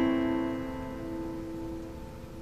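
An A minor chord on a steel-string acoustic guitar ringing out and slowly fading, with no new strum.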